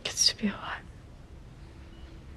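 A person's short, breathy whispered vocal sound lasting under a second, right at the start, followed by quiet background.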